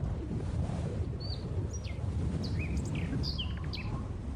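Small birds chirping, a scatter of short, quick calls that slide in pitch, starting about a second in, over a low steady rumble of outdoor background noise.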